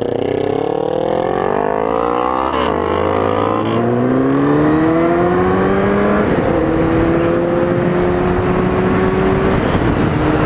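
1999 Kawasaki ZX-9R Ninja's inline-four engine accelerating hard through the gears: the revs climb, drop at each of three upshifts in the first six or so seconds, then hold a steady cruise. Wind rush on the helmet microphone grows as the speed builds.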